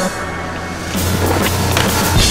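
Skateboard wheels rolling on concrete with sharp board clacks, over a rock music soundtrack. The music dips at the start and comes back in fuller about a second in.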